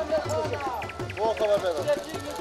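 A person's voice, rising and falling in pitch in short phrases, over street noise.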